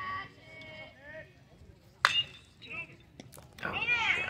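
A single sharp crack of a bat hitting a pitched baseball about two seconds in, followed by spectators' voices rising into shouts near the end.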